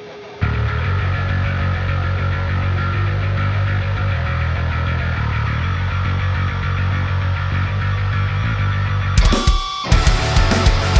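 Heavy metal mix of distorted electric guitar and a Dingwall NG2 five-string electric bass, coming in loud about half a second in with a heavy low end. A short break comes near the end, and then the band comes back in with rhythmic hits.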